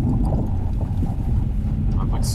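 Toyota RAV4 driving on snow, heard from inside the cabin: a steady low rumble of engine and tyres.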